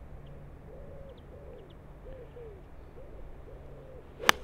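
Faint, repeated soft cooing of a pigeon: about six low notes, each rising then falling, with a few faint high chirps of small birds over a steady low rumble.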